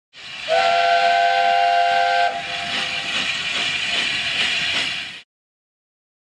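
A steam locomotive's chime whistle sounds a chord of several notes together for about two seconds, then breaks off into a hiss of steam. The hiss stops suddenly about five seconds in.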